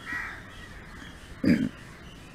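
Two short harsh calls, one right at the start and a louder one about one and a half seconds in, heard over low background noise.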